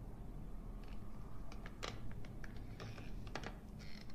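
A run of light, irregular clicking taps, about a dozen, starting about a second in, over a steady low hum.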